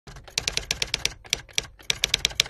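Typewriter-like clicking sound effect: a quick, irregular run of sharp clicks over a low hum.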